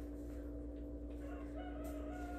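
A faint, drawn-out animal call, held on a steady pitch, begins about halfway through over a constant low hum.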